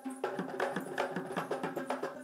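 Traditional Sri Lankan drumming for a Kandyan dance: fast, dense drum strokes over a steady held low note.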